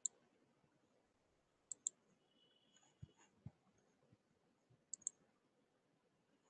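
Faint computer mouse clicks in three quick double-clicks, with two soft low thumps in between, over near silence.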